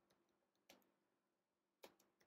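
Near silence with a few faint computer keyboard key clicks as code is typed, the two clearest under a second in and near the end.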